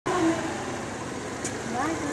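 Motor scooter engine running at low speed as it pulls away, with short bits of voice over it: a brief call near the start and a rising voice near the end.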